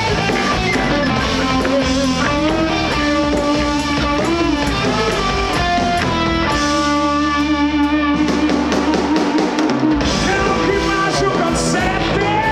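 Live rock band playing an instrumental passage, with electric guitar lines over drums and bass. About six and a half seconds in, the band holds one long chord for a couple of seconds before the playing moves on.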